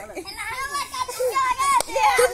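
Several children's voices calling and shouting at play, high-pitched, with a single sharp click near the end.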